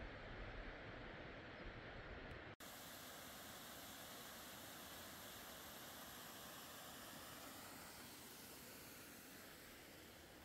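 Wind rumbling on the microphone, then after a sudden cut about two and a half seconds in, the steady hiss of a small waterfall and rocky creek, easing slightly near the end.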